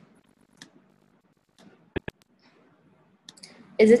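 Two sharp clicks a tenth of a second apart, a quick click of a computer mouse, against near silence.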